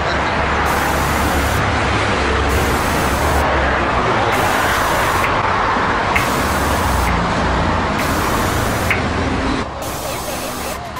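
Steady road traffic noise from a busy multi-lane road below, a continuous rush with a low rumble, falling away slightly just before the end.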